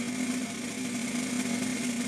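A sustained snare drum roll held at an even level: the opening roll of a band arrangement of a national anthem.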